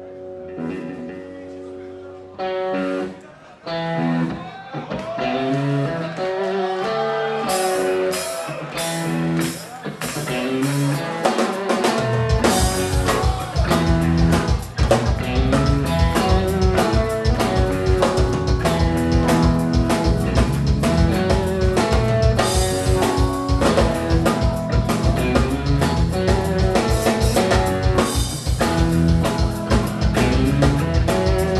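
Live rock band playing: a held chord, then a melodic guitar intro without drums, until the drums and bass come in about twelve seconds in with a steady beat under the guitar.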